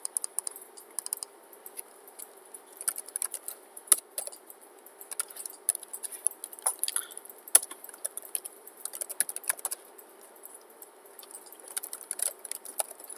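Typing on a computer keyboard: an irregular run of key clicks with short pauses between bursts, a few strokes louder than the rest.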